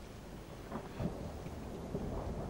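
Distant thunder rumbling low under steady rain, a quiet storm ambience with a slight swell about halfway through.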